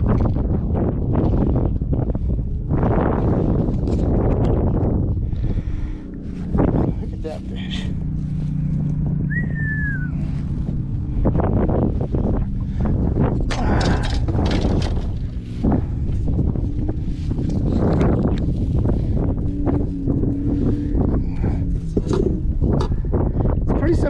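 Wind noise on the microphone, with scattered knocks and rustles as a large redfish is handled in a landing net on a boat's carpeted deck. A short falling whistle comes about ten seconds in.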